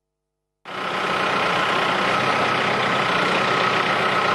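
Backhoe loader's diesel engine running steadily, with a steady high-pitched whine over it; it starts about half a second in after a brief silence.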